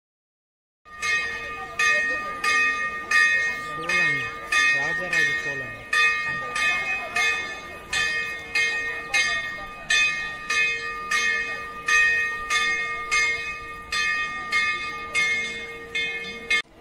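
A temple bell rung over and over, its strikes coming about one and a half times a second with the ring carrying on between them, starting about a second in.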